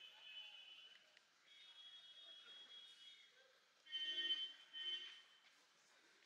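A high-pitched steady tone, alarm- or whistle-like, sounds in several stretches: a faint one at the start, another through the middle, then two louder short blasts about four and five seconds in.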